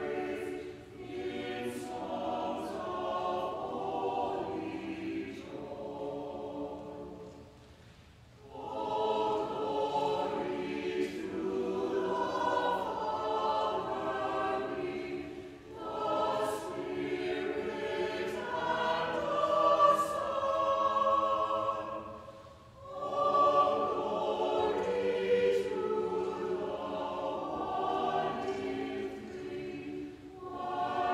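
Mixed church choir singing a choral introit in long phrases, breaking off briefly about eight seconds in and pausing more shortly twice later on.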